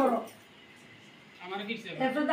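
A woman's voice trails off in a falling tone, then there is about a second of quiet room tone, and her voice starts again near the end without clear words.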